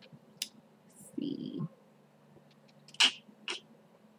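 A woman's brief low murmured vocal sound about a second in. Near three seconds come a short sharp burst and a smaller one. Between them the room is quiet.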